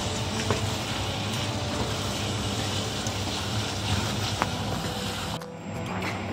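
Fish and prawn filling frying in a stainless steel pan: a steady sizzle, with a few light clicks of a wooden spoon stirring it. The sizzle drops away sharply near the end.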